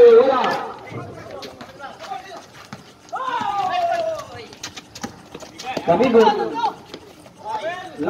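Voices shouting over a basketball game on an outdoor court, one long falling call about three seconds in and more shouts near the end, with scattered sharp knocks and footfalls from play on the court.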